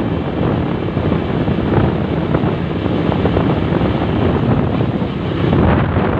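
Steady wind rushing over the camera microphone of a motorcycle moving at road speed, mixed with the motorcycle's running noise.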